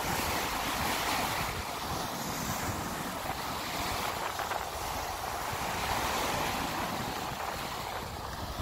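Small sea waves breaking and washing up a sandy beach in a steady rush that swells and eases a few times, with wind buffeting the microphone.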